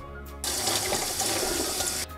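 Kitchen tap running water over fresh cranberries in a plastic colander in a stainless steel sink, rinsing them. The steady splashing starts suddenly about half a second in.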